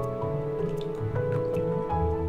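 Gentle background music with held notes, over which melted butter drips and splashes as it is poured into chocolate crepe batter.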